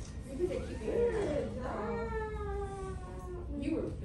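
A high-pitched voice making wavering, drawn-out sounds, then one long held note that slowly falls in pitch, about halfway through.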